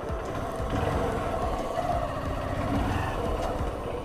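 Honda CB Shine 125's single-cylinder engine running steadily at low speed as the motorcycle rolls slowly along a path, a rapid mechanical pulsing.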